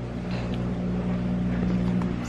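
Steady low electrical hum, growing slowly louder.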